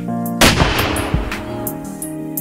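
Small muzzle-loading black-powder field cannon firing once, about half a second in: one sharp blast followed by a long fading rumble.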